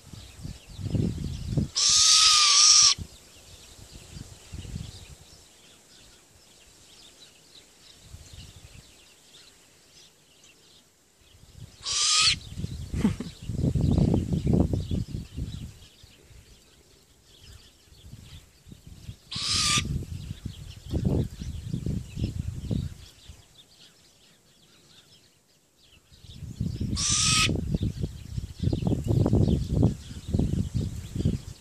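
Hybrid great grey owl × brown wood owl giving four harsh, hissing screech calls, each about a second long, spaced roughly eight to ten seconds apart, each ending in a brief falling tone. Bouts of low rumbling noise fill much of the time between the calls.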